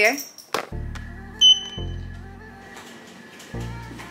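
Background music comes in under a second in, with low bass notes repeating. A short, high beep sounds once about a second and a half in, louder than the music.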